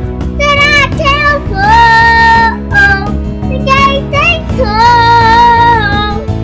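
A young girl singing a melody with long held notes over recorded backing music.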